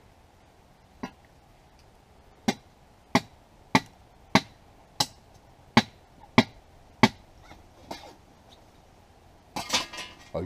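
A long rod driven down into a clay stove pipe, striking it about ten times at a steady pace of roughly one and a half blows a second, with the last two blows fainter. The blows are attempts to break the clay pipe out of the brick stove.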